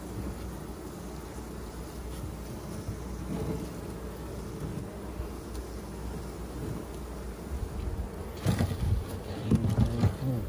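Honey bees buzzing over an opened hive, a steady hum with individual bees flying close by. Near the end, louder knocks and scrapes as the wooden inner cover is lifted off the frames.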